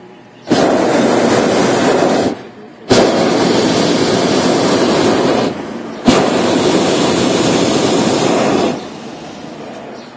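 Hot air balloon's propane burner firing in three blasts of about two to two and a half seconds each, starting abruptly, with short breaks between.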